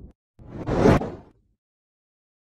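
An editing whoosh sound effect: one rush of noise that swells for about half a second and drops away sharply about a second in.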